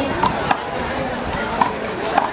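Rubber handball slapped by a bare hand and smacking off the concrete wall and court in a one-wall handball rally: a few sharp, short smacks spread across two seconds, with spectators chattering behind.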